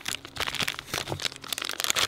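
Plastic blind-bag toy packets crinkling as hands handle and open them, in irregular small crackles.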